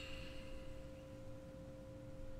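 A faint, steady drone of pure held tones, two low notes sounding together without a break, like a sustained musical pad or tone.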